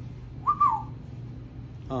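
A bird's single short whistled call about half a second in, rising then dropping in pitch, over a steady low hum.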